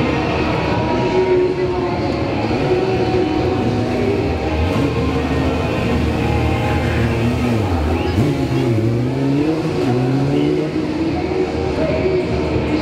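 A Yamaha sport motorcycle engine revving up and down as the bike is ridden, its pitch dipping and climbing several times.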